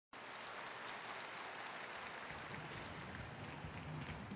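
Audience applause in a large hall, a steady even patter. A low-pitched sound joins about halfway through.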